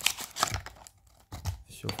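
Perfume packaging being handled: irregular rustling and crinkling, with a few scattered clicks and knocks as the glass bottle comes out of its box.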